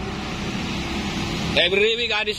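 A steady rushing noise with no distinct events, of the kind left by passing traffic or open-air background. A man's voice comes in about one and a half seconds in.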